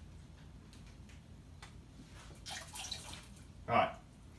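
Hot chili sauce squirted from a squeeze bottle into broth in a stainless steel mixing bowl: a sputtering, splashing squirt about two and a half seconds in and a shorter, louder one near the end.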